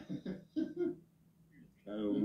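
Speech: a few short spoken syllables in the first second, a pause, then talk resumes near the end.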